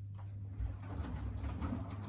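Miele W4449 front-loading washing machine during a 60 °C Hygiene wash: a steady motor hum, then, from about half a second in, the drum turns and wet laundry and water slosh and tumble inside.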